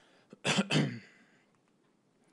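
A man clearing his throat once, briefly, about half a second in, picked up by a conference microphone.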